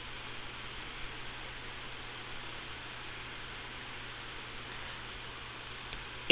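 Steady background hiss with a faint low hum: the recording's room tone.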